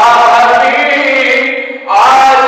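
A man's solo voice chanting a devotional elegy into a microphone and loudspeaker, one long melodic phrase held for nearly two seconds before a short break at the end.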